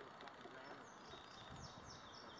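Near silence with a faint bird calling: a quick series of short, high, falling chirps starting about a second in.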